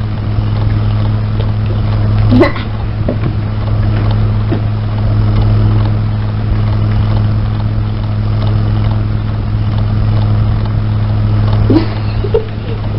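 A steady low hum runs all through, with a sharp knock about two and a half seconds in and another just before the end.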